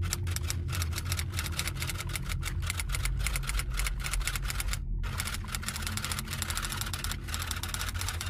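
Typing sound effect: rapid, dense key clicks with a short break about five seconds in, over a low steady drone.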